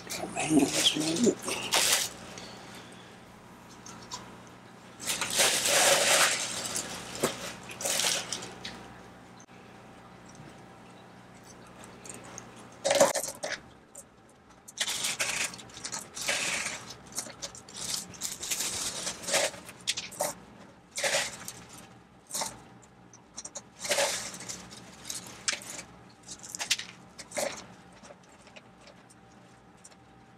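Clear plastic bag of expanded clay pebbles crinkling and the pebbles clattering as they are scooped out and packed into a plastic net pot by gloved hands, in irregular bursts of handling noise. A low steady hum runs under it and stops about a third of the way in.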